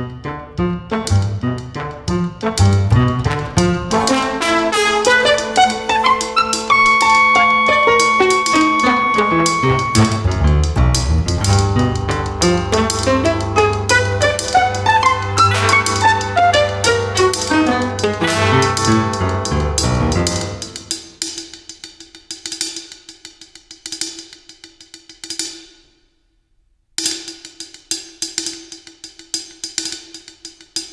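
An improvising jazz octet of bass, saxophones and clarinets, trumpet, trombone, violin, piano and drums plays a dense, busy passage with a long held high note in the middle. About two-thirds of the way through, the texture thins to sparse percussive ticks over a single sustained note. Near the end it breaks off to silence for about a second, then resumes.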